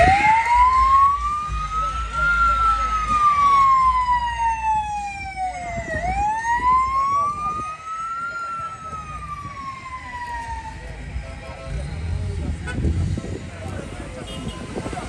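Police car siren wailing in two slow rise-and-fall sweeps, each climbing for about two seconds and falling for about four, then cutting off about eleven seconds in.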